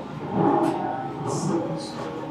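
Indistinct low voices, with light scraping of a plastic knife and fork cutting food in a plastic takeout bowl.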